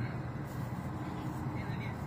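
Steady low rumble of city ambience, with faint voices in it.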